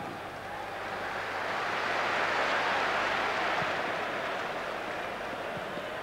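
Football stadium crowd noise, many voices blended together, swelling about two seconds in and easing off toward the end.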